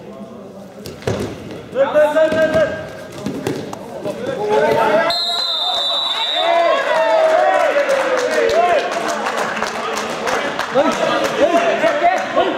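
Wrestlers' bodies thudding on the mat, with a referee's whistle blown once for about a second and a half about five seconds in. Coaches and spectators shout over it from about two seconds in.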